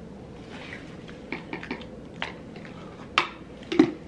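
Quiet room tone with a scatter of soft clicks and small mouth sounds as a plastic spoon dusts powder onto an outstretched tongue; one sharper click comes a little after three seconds.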